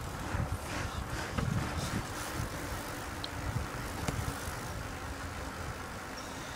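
Wind buffeting the microphone while riding a bicycle over asphalt, with the rolling of the tyres underneath and a few small clicks and rattles from the bike.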